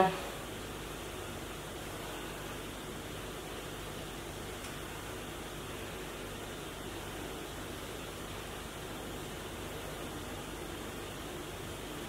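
Steady, even hiss of background noise, with no distinct sounds standing out.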